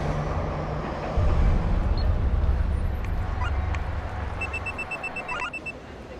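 A steady low rumbling drone. A few faint clicks come past the middle, then about four and a half seconds in a rapid, even run of high electronic beeps from an ATM lasts a little over a second.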